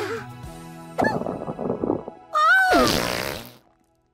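Cartoon fart sound effects over soft background music. A rumbling one comes about a second in, then a louder, squeaky one that rises and falls in pitch, followed by a brief hush.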